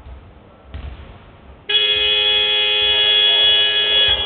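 Arena game-clock horn sounding the end of the quarter as the clock reaches zero: a loud, steady, brassy buzz that starts suddenly near the middle and holds. A single thump comes about a second before it.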